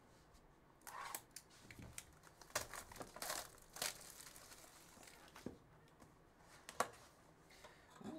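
Faint, intermittent crinkling and tearing of plastic shrink-wrap being stripped off a trading card box, with light rustles and clicks of the cardboard box being handled and opened.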